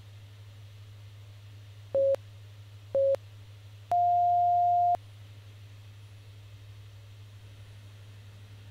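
Interval timer countdown: two short beeps a second apart, then one longer, slightly higher beep that marks the end of the work interval. A low steady hum runs underneath.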